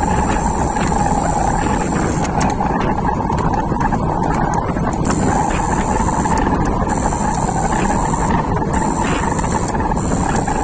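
E-bike riding along a road: a steady rush of wind and tyre noise with a steady whine from the electric motor. A thin high tone drops out and returns several times.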